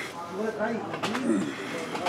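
Indistinct men's voices with no clear words: a string of short sounds, each rising and falling in pitch.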